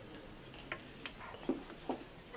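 A few light knocks and clicks, four in all, the last two the loudest, over quiet room tone.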